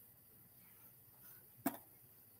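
A single short knock about one and a half seconds in, as a paperback book is set down, over quiet room tone.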